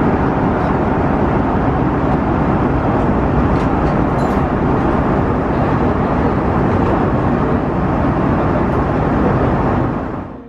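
Steady low rushing cabin noise inside an Airbus A330 airliner, the air-conditioning and engine drone that fills the passenger cabin.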